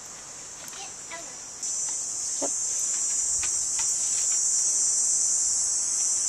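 Steady high-pitched drone of insects, such as crickets or cicadas, in the yard, stepping up suddenly in loudness about one and a half seconds in.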